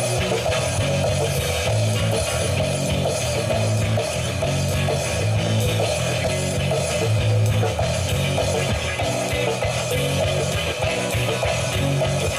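Live rock band playing, with electric guitars over a drum kit, at a steady loudness.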